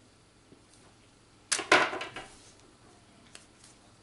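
A short, loud swishing scrape about one and a half seconds in, dying away within a second, as a piece of pizza dough is cut and pulled off a plastic cutting board.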